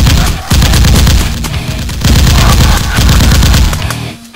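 Long bursts of rapid machine-gun fire, a dubbed gunfire sound effect, very loud, with music underneath; the fire briefly drops about half a second in and tails off near the end.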